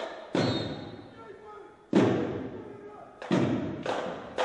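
Drill team and drumline routine's percussive accents: four hard, separate hits, the second about two seconds in the loudest, each echoing in the gym hall.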